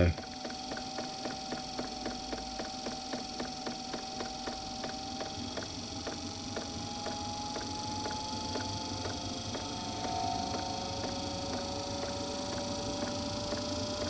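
Eberspacher D2 diesel heater running, its fuel dosing pump ticking steadily at about three to four ticks a second, over a steady whine that slowly rises in pitch. The ticking pump shows that fuel is being delivered and the heater has fired up after its non-start fault.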